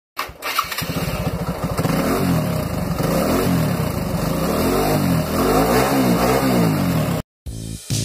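A motorcycle engine cranked on the electric starter and catching within about a second, then revved up and down several times. It cuts off suddenly near the end.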